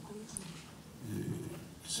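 A pause in a man's speech at a microphone: quiet room tone, with a faint, brief hesitation sound from him a little after a second in.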